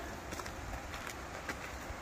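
Quiet outdoor ambience on a bush trail, with a few faint, irregular footfalls on dry dirt and gravel.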